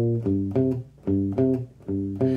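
Electric guitar playing a single-note minor pentatonic riff in short, separated notes, with a brief pause about a second in.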